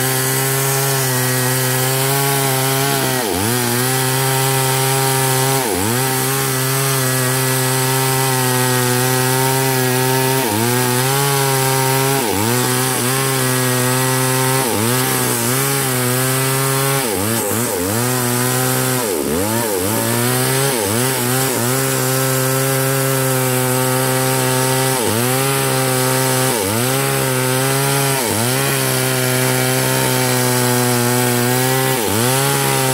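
Small chainsaw cutting through a large sengon log at full throttle. Its engine note dips and climbs back again and again, every second or few, as the chain bites into the wood and loads the engine.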